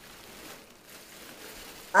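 Faint rush of air as helium is sucked in through the necks of foil balloons.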